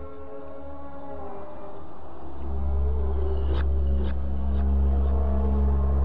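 Cinematic intro music: layered sustained tones over a deep bass drone that swells much louder about two seconds in, with three sharp hits about half a second apart midway through.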